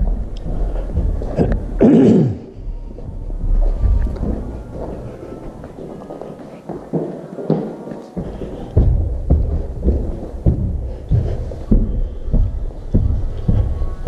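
Footsteps and bumping handling noise from a body-worn camera as someone walks through the house and climbs carpeted stairs. In the second half the thuds are regular, about two a second, and there is a brief vocal sound about two seconds in.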